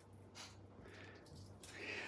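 Near silence in a small kitchen, with a faint stifled snort of laughter through the nose near the end.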